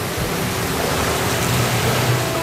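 Loud, steady rushing noise with a faint low hum underneath.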